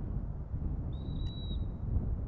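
A single high, steady whistled bird note lasting almost a second, starting about a second in, over a steady low rumble.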